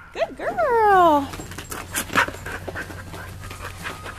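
Border collie–Australian shepherd mix panting in quick breaths after running the weave poles. A long cry falling in pitch comes in the first second.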